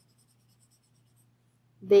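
Faint scratch of a felt-tip highlighter marking a paper worksheet, followed near the end by a woman's voice resuming.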